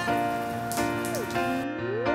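Steady rain falling, under background music of held notes; one note slides upward in pitch in the second half.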